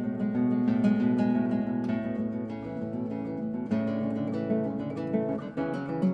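Acoustic guitar music: plucked notes ringing on, with a quieter passage around the middle before a new phrase begins.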